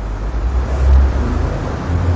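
A deep low rumble that swells about a second in and then eases, over a faint steady room hiss.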